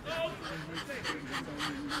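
A man's voice and short breathy laughter, in quick pulses about four or five a second.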